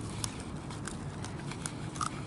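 A knife slitting open the belly of a small Chinook salmon, with a few faint, scattered clicks as the blade cuts through the flesh.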